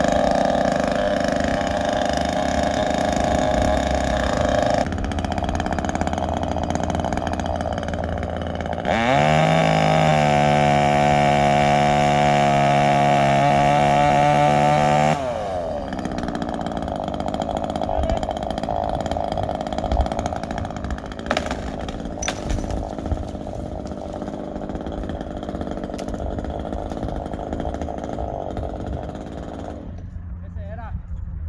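Chainsaw running up in the tree. It runs at a low, steady note, then revs up about nine seconds in and holds full throttle for about six seconds while cutting a limb, before dropping back to idle.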